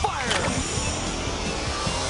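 Sci-fi giant-robot sound effects from a TV action soundtrack over background music: a cluster of falling electronic sweeps at the start, then a steady low mechanical hum with faint slowly rising tones.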